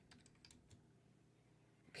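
Faint computer keyboard typing: a few scattered key clicks as a search is typed in.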